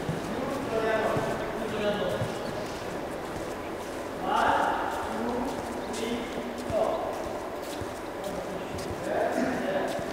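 Indistinct talking of a group of people in a large, echoing sports hall, with a few faint knocks in between.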